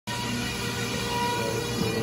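Steady mechanical hum of a factory floor, machinery and fan noise with a faint steady tone through it.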